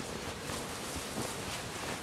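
Steady outdoor background noise with no distinct events.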